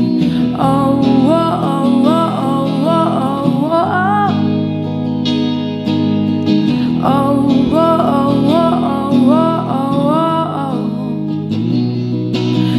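Fender Mustang electric guitar playing sustained strummed chords, with a woman singing a melody over it in two phrases, the first from about half a second to four seconds in and the second from about seven to eleven seconds in.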